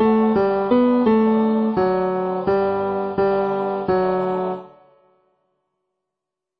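Instrumental practice-track rendering of a choral piece's voice parts, played as a string of chords with sharp attacks, first quickly and then about one every 0.7 s. The chords stop about four and a half seconds in, the last one fading to silence.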